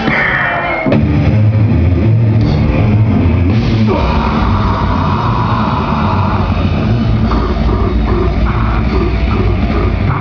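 Grindcore band playing live through a PA. The drums and distorted guitars come in hard about a second in and keep up a loud, dense wall of sound.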